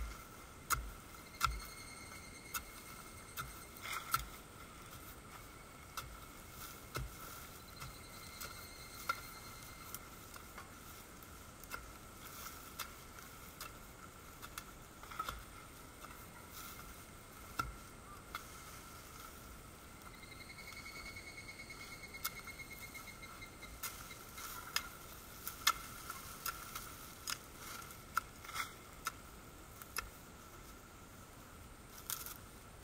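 Scattered sharp clicks and scrapes of a stick and gloved hands clearing soil and leaf litter, over a faint, steady high-pitched whine. A brief rapid trill comes about two-thirds of the way through.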